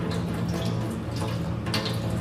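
Water running from a flexible sink hose onto glass microscope slides over a stainless steel sink, steady throughout: the final water rinse that washes the safranin counterstain off Gram-stained slides.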